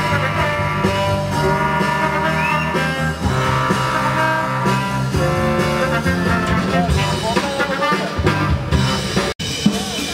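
Trombone quartet playing held, harmonised chords that change every second or so. About nine seconds in the music cuts off abruptly, and a drum kit comes in.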